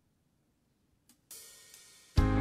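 Near silence, then a faint click about a second in and a cymbal crash that fades away: the opening of a recorded accompaniment track for a gospel song.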